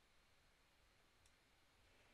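Near silence: faint room hiss, with a single faint click a little over a second in.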